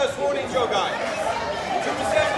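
Overlapping, indistinct chatter and calls from several people's voices, the sound of the onlookers and people around the mat at a karate bout.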